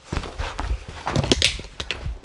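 Footsteps on a tiled floor right beside a camera resting on the floor, followed by a quick run of knocks and handling noise as the camera is grabbed and moved, loudest about a second in.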